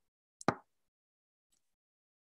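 Near silence broken by one short, sharp pop about half a second in, followed by a very faint tick near the middle.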